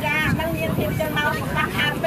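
Speech only: a voice talking continuously over a steady low background noise.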